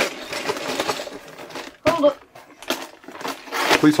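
Cardboard box lid being slid up off its inner box: a steady papery scraping and rubbing, broken by a brief voice sound about two seconds in.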